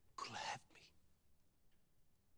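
Only speech: a man's short, soft, breathy spoken phrase about a quarter of a second in, then near silence.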